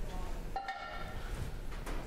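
A silkscreen frame set down on the work table: a knock about half a second in, followed by a brief ringing of several steady tones that fade away.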